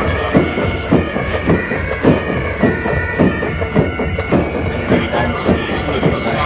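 Military pipe band playing a march: bagpipes with their steady drone held under the melody, over a regular drum beat of about two strokes a second.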